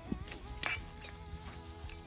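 Faint background music with steady held notes, and a brief rustle of grass being handled about two-thirds of a second in.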